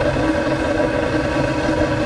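Steady drone with a constant hum from the burner rig running, its hot exhaust blowing out the open end of the pipe.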